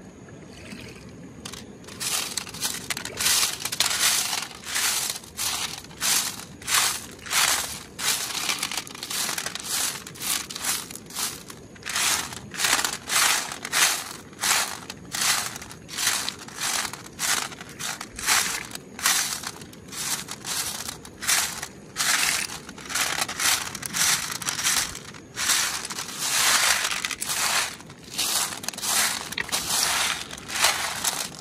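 Wet river pebbles being raked by hand across a perforated metal sieve tray: a rough rattle of stones on stones and metal, repeating in strokes about one to two times a second. It starts about two seconds in.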